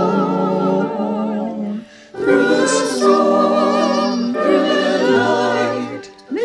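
Choir singing in long held phrases, with a short breath pause about two seconds in and another at the end.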